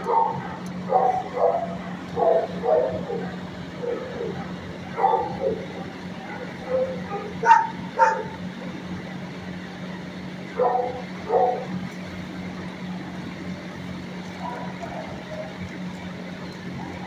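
Dogs barking in a shelter kennel, in short single and paired barks, a dozen or so, fading to fainter ones near the end, over a steady low hum.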